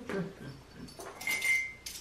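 A dog whining briefly on one high, steady note about halfway through, with light scraping and tapping of a metal measuring spoon scooping coffee grounds.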